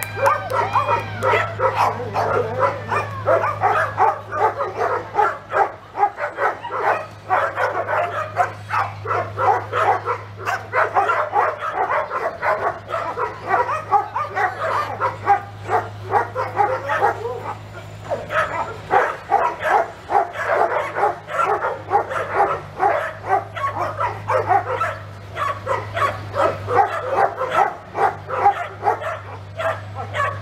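Dogs barking continuously, the barks dense and overlapping as from several dogs at once, over a steady low hum.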